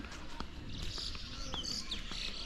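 Small birds chirping and twittering, high-pitched, with a few short quick chirps coming in about a second in.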